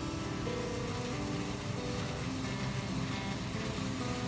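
Combine harvester running steadily as it cuts a dry soybean crop, with background music laid over it.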